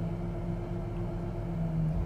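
Car engine idling, heard from inside the cabin as a steady low hum of unchanging pitch that swells and fades slightly.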